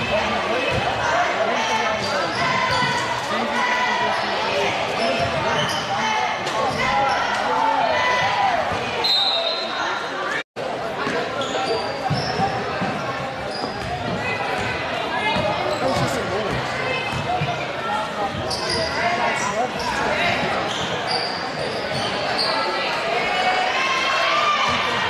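Basketball game sound in a large gym: a ball bouncing on the hardwood floor, short sneaker squeaks, and indistinct voices of players, coaches and spectators calling out, echoing in the hall. The sound cuts out for a split second near the middle.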